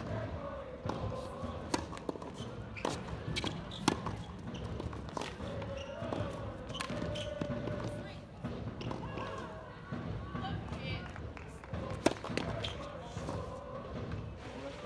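Tennis ball struck back and forth by racquets and bouncing on a hard court: sharp hits about once a second for the first four seconds. People talk in the background between points, and a few more sharp ball bounces come near the end.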